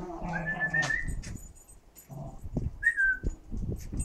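Two terriers playing over a ball: a low dog growl in the first second, two short high whistle-like whines, one rising near the start and one falling about three seconds in, and scattered knocks of the ball and paws on the paving.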